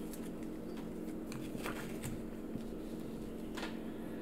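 A few faint, scattered clicks and light taps of game cards and cardboard pieces being handled on a tabletop, over a steady low hum.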